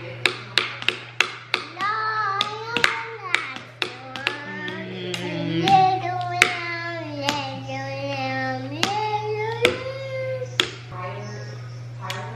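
Wooden chopsticks tapping out a rough beat: quick taps, about three a second at first, then sparser. A voice sings along over the taps.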